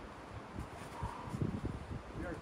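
Wind buffeting the microphone outdoors: a low, uneven rumble that surges briefly about two-thirds of the way through.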